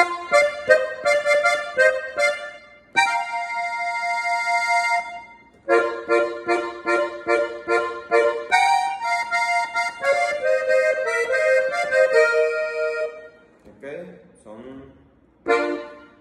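Piano accordion's treble keys playing a melodic passage: quick short repeated chords, a held chord for a couple of seconds, then more rapid repeated notes and a running phrase that stops about thirteen seconds in, with one more short note near the end.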